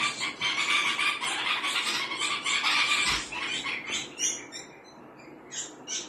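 Small birds calling, an adult songbird and its fledgling: a dense run of quick, high chirps that thins out after about four seconds to a few scattered chirps.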